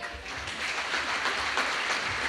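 Audience applause, rising just as the last accordion chord dies away at the very start and then carrying on as steady clapping.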